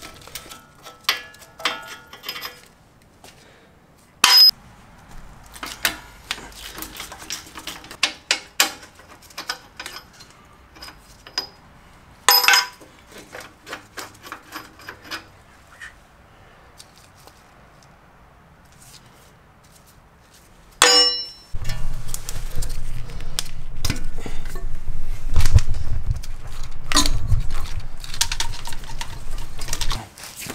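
Metal tools clinking and clanking on the Jeep's front hub as the wheel bearing bolts are worked loose with a wrench and socket, with three louder single metal clangs. A loud steady low drone runs through the last third.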